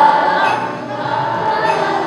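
Elementary school children's choir singing a holiday song, holding a long note.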